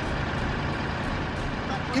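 Tracked armoured vehicles running with a steady low engine rumble, with faint regular clicks.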